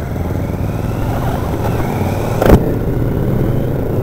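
Cruiser-style motorcycle engine running steadily while riding, with a single sharp thump about two and a half seconds in.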